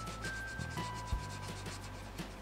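Felt-tip marker rubbing back and forth on notebook paper in quick short strokes as squares are coloured in. Soft background music with held notes plays underneath.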